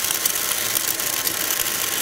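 Tefal 8.60 Aqua Light cordless stick vacuum running steadily: its 63,000 rpm DC motor and motorised roller brush work along a floor edge, with faint ticking underneath.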